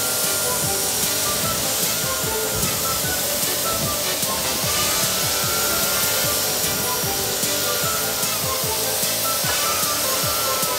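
A steady hiss of cartoon car-wash spray jets over background music.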